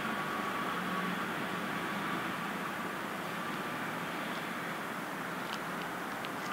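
Steady outdoor city background noise, a hum and hiss of distant traffic, with a faint high tone that fades out in the first couple of seconds and a few faint ticks near the end.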